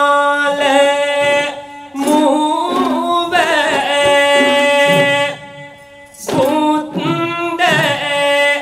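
Sung melody with instrumental accompaniment, in long held phrases with a short break a little past the middle.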